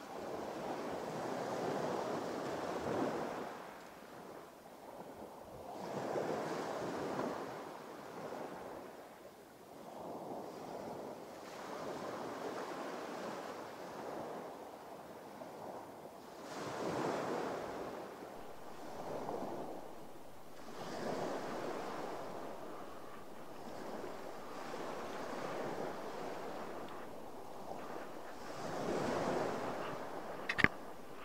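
Sea waves washing against the side of a drifting boat, swelling and fading every few seconds, with some wind on the microphone.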